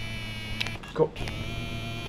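Homemade transistor-driven EMP generator buzzing: a steady electrical buzz with a dense ladder of overtones over a low hum, breaking off briefly about a second in.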